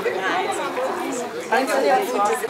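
A small group of people talking and exchanging greetings, voices overlapping.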